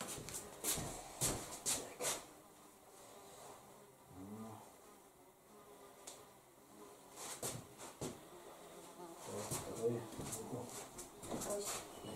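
A fly buzzing on and off in a quiet room, mixed with soft knocks and scrapes from hands working dough in an enamel basin.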